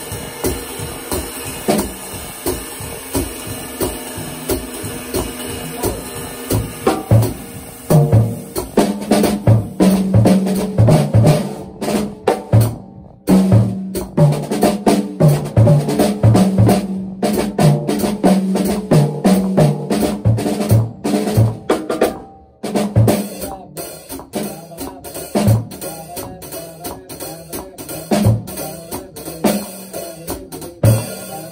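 Jazz drum kit played with sticks. The first seven seconds or so are steady, light time on the ride cymbal. Then comes a louder, busier passage of snare, tom and bass drum hits, and the playing turns lighter again near the end, all within a 12-bar blues form.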